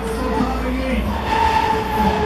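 Break Dancer fairground ride running at full speed: a steady low rumble of the spinning platform and cars rolling round, with music from the ride's sound system over it.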